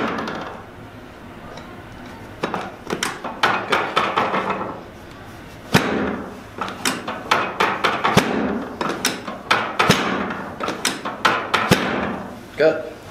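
Chiropractic drop table knocking again and again under a sacral drop adjustment, as the pelvic section is set and dropped under downward thrusts on the sacrum. A run of sharp clicks and knocks, with one stronger knock about six seconds in, then a steady two or three knocks a second.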